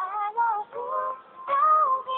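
A pop song: a sung melody over backing music, phrase following phrase.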